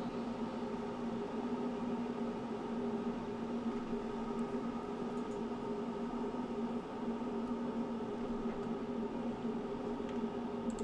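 A steady machine hum with a faint hiss, unchanged throughout, with a few faint clicks about five seconds in.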